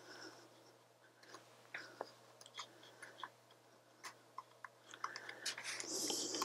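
Faint, scattered small clicks and taps of an M.2 SSD being handled and pressed into its slot inside an open Alienware M15 R4 laptop, coming more often towards the end.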